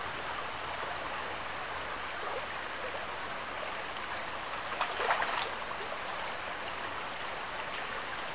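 Shallow creek water running steadily over gravel and rocks, a continuous rushing. About five seconds in there is a short burst of louder noise.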